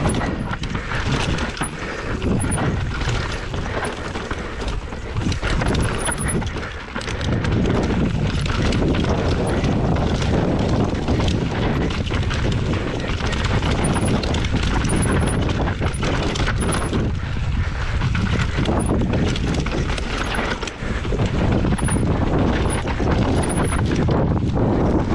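Enduro mountain bike descending a rocky dirt trail at speed: tyres running over dirt and stones with constant clatter and rattling of the bike from the rough ground. The sound dips briefly twice, about seven seconds in and near the end.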